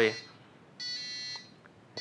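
Electronic buzzer on an Arduino-controlled prop control panel giving a single steady beep about half a second long, a little under a second in, as the countdown ends on 'deploy'.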